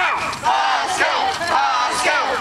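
A crowd of young children shouting and chanting together in high voices, without letup.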